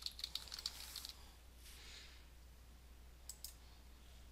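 Computer keyboard typing in a quick run of keystrokes for about the first second, then a faint pair of clicks a little past three seconds in as the search is run.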